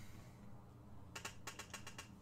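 Faint room quiet, then about a second in a quick run of about eight light clicks in under a second.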